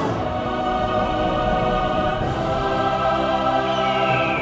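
Choral music: a choir holding long, sustained notes over an orchestral backing.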